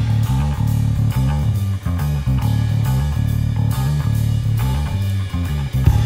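Instrumental stoner rock passage with no vocals: bass and guitar play a bass-heavy riff whose low notes change in a repeating pattern, over drums.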